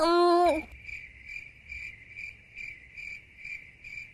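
A woman's voice trails off in a drawn-out hesitant 'eh' for the first half second. Then a cricket chirps steadily, about two chirps a second, as a comic awkward-silence sound effect.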